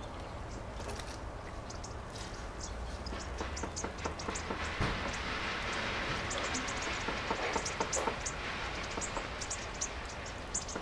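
A small flock of bushtits giving many short, very high, thin contact calls, more frequent in the second half, with soft splashing of water as they bathe in a bird bath.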